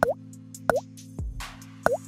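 Three short bubbly pop sound effects, each a quick dip in pitch, spaced a little under a second apart, from a subscribe-button overlay animation. They play over background music with a steady sustained pad and a beat.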